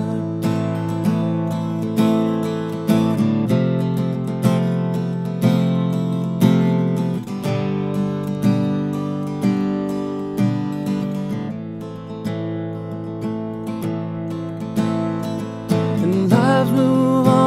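Solo acoustic guitar strummed in steady chords, an instrumental break in a song with no singing over it.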